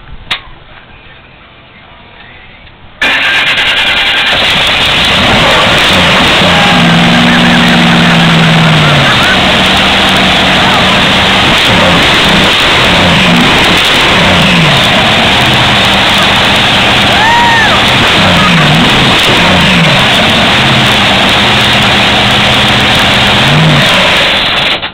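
Supercharged 1200-horsepower drag boat engine starting: it fires with a sudden very loud start about three seconds in, then runs very loud, revved up and down several times.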